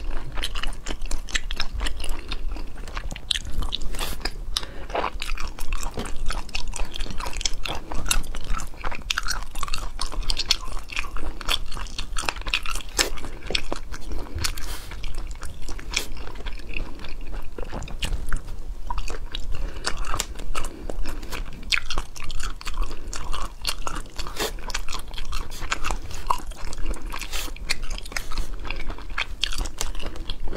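Close-miked ASMR eating: a person biting and chewing pieces of saucy braised food, with many short crunches and clicks.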